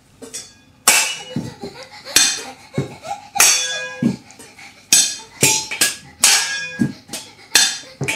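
Upturned stainless steel cooking pots struck one after another with a spatula, played like a drum kit. There are about a dozen strikes, roughly one to two a second, each pot ringing at its own pitch, with a few duller thuds among them.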